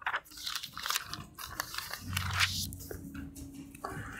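Paper rustling in short, irregular crinkles as the pages of a Bible are leafed through to find a passage.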